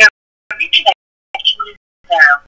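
Speech from a recorded radio show, in short clipped bursts with dead silence between them.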